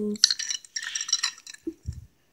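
Hard plastic toy building pieces clicking and rattling against each other as they are handled and pressed together, with a dull low thump near the end.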